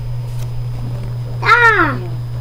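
A young child's short high squeal, falling in pitch, about a second and a half in, over a steady low hum.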